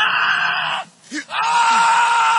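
A person screaming twice in long, high-pitched wailing cries: a short one first, then a longer held one starting just over a second in.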